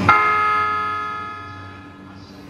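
A single bell-like chime struck once, ringing and fading away over about a second and a half, over a faint steady low hum.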